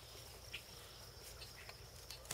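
Faint, steady high chirring of insects, with one small click about a quarter of the way in.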